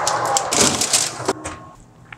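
A metal baking sheet sliding onto an oven rack: a scraping, clattering rattle of metal on metal that ends in a sharp knock a little over a second in.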